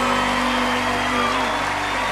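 Live band with horns and electric guitar holding a long sustained chord at the close of a soul-rock song, with the audience clapping over it.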